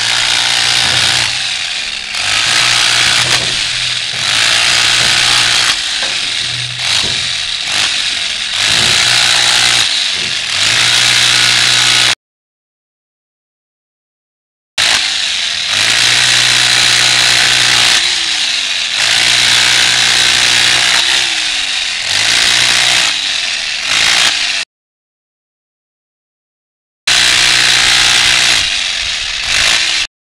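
Corded electric hammer with a pointed chisel pounding the face of a red sandstone block to rough-dress it, a loud harsh rattle in long runs. Between runs the motor briefly winds down with a falling whine. Twice the sound drops out to dead silence for a couple of seconds.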